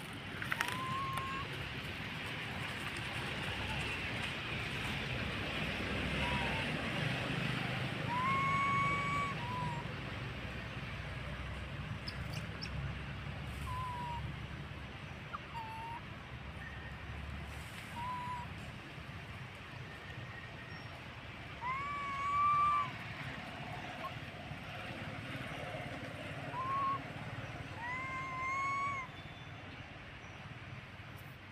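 Baby macaque giving short, arched coo calls again and again, some brief and single, a few longer, with the loudest about two-thirds of the way through. A steady outdoor background hiss runs underneath.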